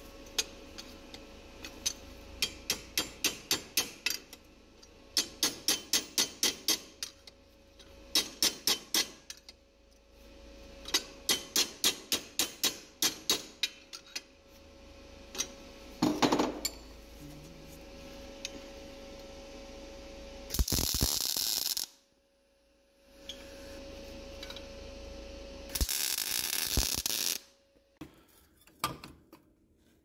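Ratchet clicking in quick runs of sharp, evenly spaced clicks, about five a second, four runs in the first half. Later come two loud bursts of hiss, each about a second and a half long.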